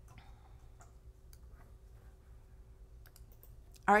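Faint, scattered clicks from working a computer, over a faint steady hum; a woman starts speaking at the very end.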